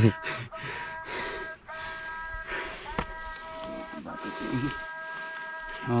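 Insects buzzing outdoors: a steady drone of several held high tones, with a single sharp knock about three seconds in.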